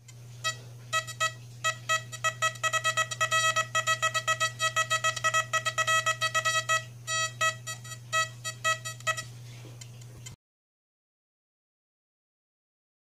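A run of short electronic beeps, all at one pitch, coming several a second in an uneven rhythm over a steady low hum. The beeps stop about nine seconds in and the hum cuts off suddenly a second later.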